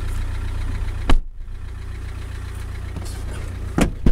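Car engine idling steadily, heard from inside the cabin as a low hum. Two short sharp knocks stand out, one about a second in and one near the end.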